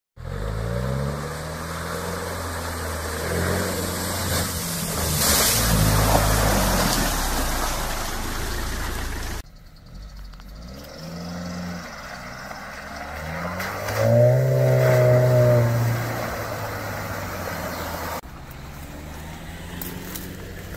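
Off-road SUV engine revving as it drives through a flooded, muddy track, the pitch rising and falling with the throttle. The sound cuts off abruptly about nine seconds in to a quieter stretch, with a louder rev a few seconds later.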